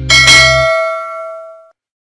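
A bright bell-like chime sound effect, struck at the start and ringing out in several clear tones that fade over about a second and a half.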